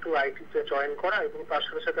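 A man speaking over a telephone line.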